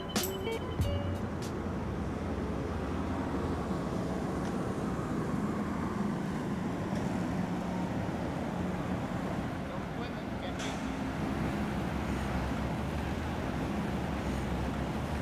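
Steady street ambience of road traffic picked up by a camcorder's microphone, with a few guitar notes ringing off in the first second or so.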